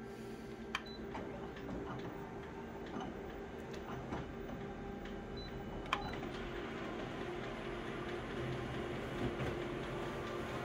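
Office colour photocopier running with a steady hum as it scans an original, with two sharp clicks, about a second in and just before six seconds, as the Start key is pressed. The running sound grows slightly over the second half as the copier starts printing.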